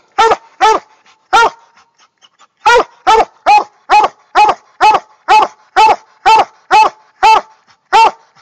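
Coonhound treeing: short, evenly spaced barks about two a second, breaking off for about a second early on and then running steadily again. This is the treeing bark of a hound that has game up a tree.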